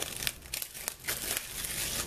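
Clear plastic wrap crinkling and crackling as it is pulled off a DVD case by hand. The crackles come thicker and louder in the second second.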